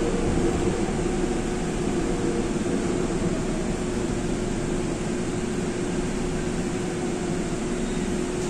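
Steady hum and rumble inside a Seoul Metro Line 5 subway car, with one constant mid-pitched tone running through it.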